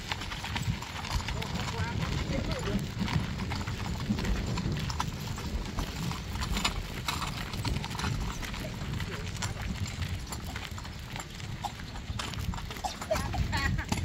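A loaded two-wheeled hand truck rolling over a rough dirt road, its wheels and frame knocking irregularly, with footsteps on the dirt.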